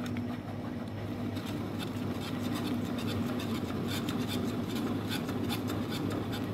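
Silicone spatula stirring and scraping a thick chocolate cream around a nonstick saucepan, a run of soft rubbing strokes, as the mixture is just coming to the boil. A steady low hum runs underneath.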